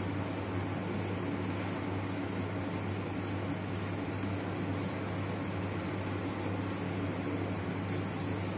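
A steady low hum with a faint even hiss behind it, unchanging throughout.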